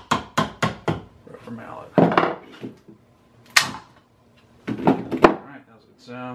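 A mallet knocking on the board walls of a mold box to loosen them: four quick knocks about a quarter second apart, then a scraping clatter, a single sharp knock and a few more knocks near the end.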